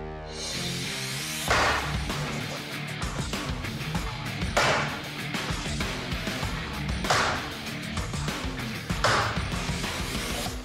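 Kukri chopping into a road barricade board, four heavy strokes two to three seconds apart, over background music.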